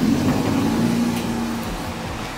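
A car passing close by on a narrow road: engine hum and tyre noise swell at the start and fade away slowly.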